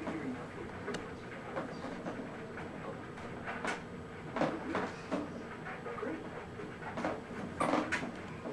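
Scattered light clicks and knocks of a plastic ride-on toy car being handled by a toddler, over a steady low hum.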